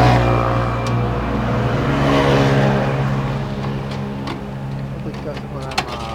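Large V-twin cruiser motorcycle engine running, revved up twice, near the start and about two seconds in, then settling back, with a couple of sharp clicks near the end.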